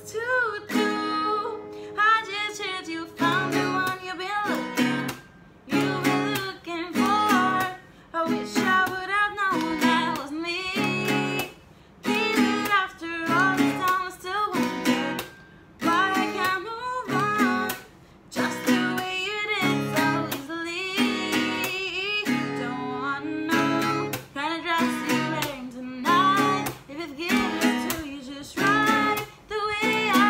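Acoustic guitar strummed in a steady rhythm while a woman sings over it, phrase by phrase, with short pauses between the sung lines.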